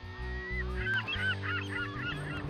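Seagulls calling, many short calls from about half a second in, over a low, sustained music bed.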